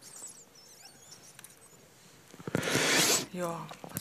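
Faint clicks of a laptop keyboard as a line of code is typed. Past halfway comes a loud breathy rush into the microphone, then a brief murmured voice.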